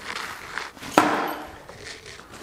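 Nylon duffel bag rustling as it is handled and lifted away, with one sharp knock about a second in.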